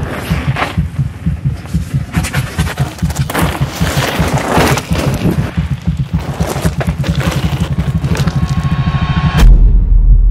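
Soundtrack music: a fast, pulsing bass beat with hissing, swishing noise layered over it, ending in a sudden deep bass boom near the end.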